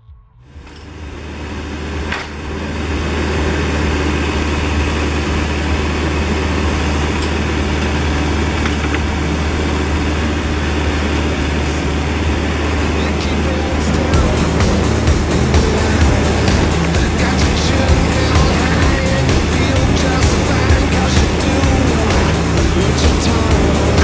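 Ditch Witch JT1220 Mach 1 horizontal directional drill running, its diesel engine a steady low drone that fades up over the first few seconds. About halfway through, rapid knocks and clanks from the drilling machinery join it.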